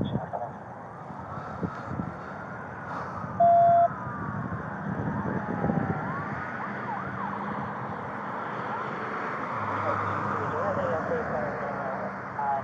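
Several emergency-vehicle sirens wailing at once, their rising and falling tones overlapping, with a faster warble near the end. About three and a half seconds in there is a single loud half-second beep.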